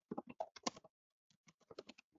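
Faint typing on a computer keyboard: a quick run of keystrokes, a short pause, then a few more clicks near the end.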